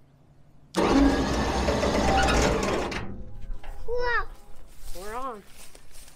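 Electric vehicle-recovery winch running in one sudden burst of about two seconds, then dying away, as it pulls an old pickup up onto a steel trailer deck. A child's voice calls out twice afterwards.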